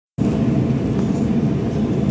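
Commercial gas wok burner running at high flame under a steel wok being burned, a loud steady low rumble that starts suddenly just after the beginning.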